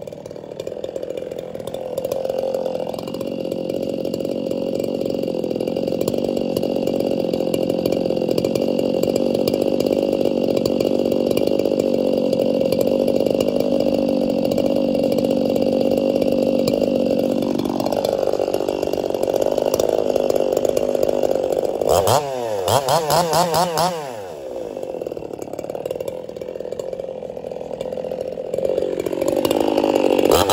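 Briscoe-built Echo CS-4910 two-stroke chainsaw running at idle, with a quick burst of several revs about three-quarters of the way through and the engine revving up again near the end.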